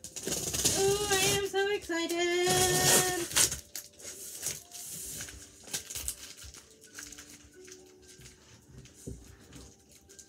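Scissors cutting and snipping at the tape and cardboard of a large shipping box, heard as scattered small clicks and scrapes. A voice speaks a few drawn-out words over the first three seconds.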